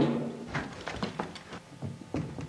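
A loud bang dies away at the start, then comes a quick run of light knocks and clatters, about a dozen in under two seconds.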